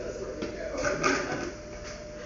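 Indistinct voices of people talking low, with a couple of small clicks from handling, over a faint steady hum.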